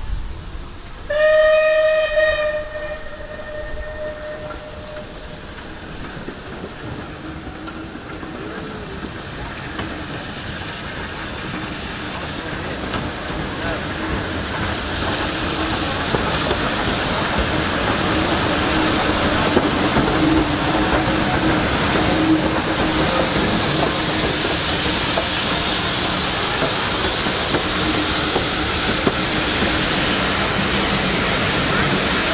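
A steam locomotive whistles once, a blast of about a second and a half starting about a second in. Then the locomotive and its coaches draw into the station, their sound, with steam hiss, growing steadily louder as the train comes nearer.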